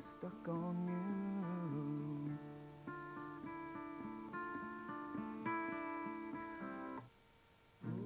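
Acoustic guitar played solo, with chords picked and left to ring. The chords change every second or so, and the playing breaks off for under a second near the end before starting again.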